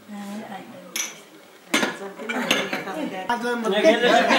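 Dishes, glasses and cutlery clinking on a crowded dinner table, with a sharp clink about a second in and more clinks from about halfway, under people's voices.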